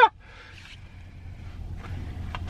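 A vehicle approaching outside, heard from inside a parked car: a low rumble that grows steadily louder. The tail of a man's laugh is heard at the very start.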